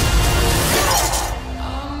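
Dramatic trailer music with a loud crashing hit, which cuts off about a second and a half in, leaving softer music.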